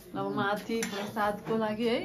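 Voices talking in short phrases, with some clinking of dishes and cutlery.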